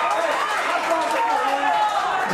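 Several voices calling out and talking over one another on a football pitch, steady throughout.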